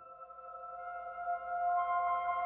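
Ambient background music: several held, ringing tones that swell steadily louder.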